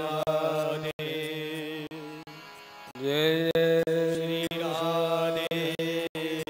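A man singing a Hindi devotional bhajan in slow, long-held notes over a steady sustained accompaniment. A new phrase swells in about halfway through. The sound cuts out completely for an instant about a second in.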